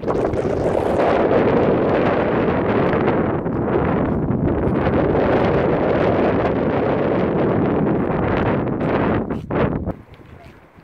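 Wind on the microphone: loud, steady noise that starts suddenly and dies away shortly before the end.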